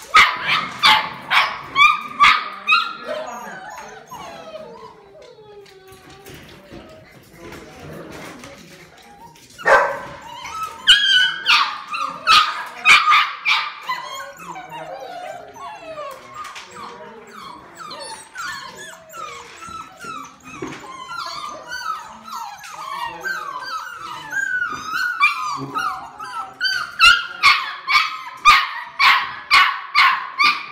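Golden retriever puppies barking and yipping in quick runs, with whining and whimpering in between. The barking is loudest at the start and again near the end, with a quieter stretch of whimpers a few seconds in.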